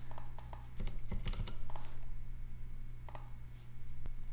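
Computer keyboard typing and mouse clicks: irregular taps, mostly in the first two seconds and again about three seconds in, over a low steady hum.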